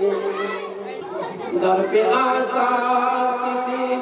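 A man's voice chanting a naat unaccompanied into a microphone, melodic with long held notes, especially in the second half.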